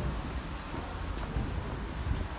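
Low rumble of wind and handling noise on a handheld phone microphone while walking, over a steady hiss.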